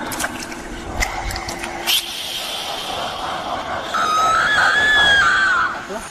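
Sound design of an animated channel-logo intro: a noisy sound bed with a few sharp hits in the first two seconds, then a high, wavering drawn-out tone for about two seconds near the end.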